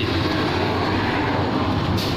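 Steady, fairly loud background noise with a low hum underneath and no distinct events.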